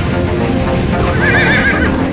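Rock band music playing, with a high, wavering note with heavy vibrato for under a second, starting about a second in.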